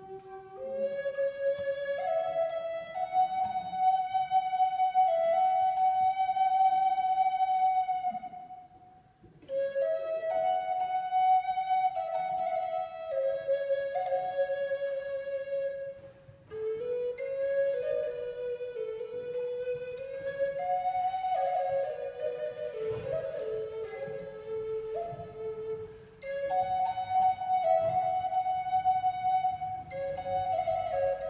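A long wooden end-blown flute made by the Vermont Wooden Flute Company plays a slow solo melody of long held notes. The phrases break off briefly about every eight seconds, where the player takes a breath.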